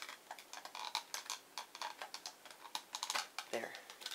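Small irregular plastic clicks, taps and rustling as a battery is pushed and fitted into the battery compartment of a plastic smoke detector housing.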